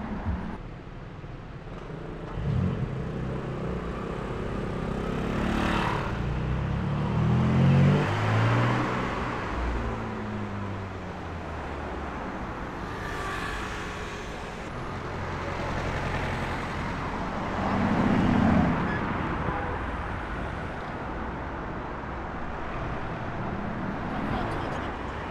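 Supercar engines accelerating away through city traffic over steady street noise. The engine note climbs and drops in steps, loudest about eight seconds in, and a second car swells up about three quarters of the way through.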